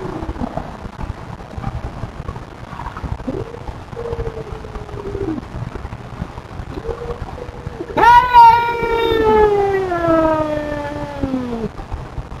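Feral cats in a territorial standoff, giving low, drawn-out yowls that slide up and down in pitch. About eight seconds in comes a loud, long wailing yowl that slowly falls in pitch over three or four seconds, with a lower yowl falling beneath it.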